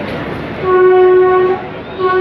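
YDM-4 diesel locomotive horn giving one steady blast of about a second, starting about half a second in, with a second blast starting at the very end. Under it runs the noise of the moving metre-gauge passenger train.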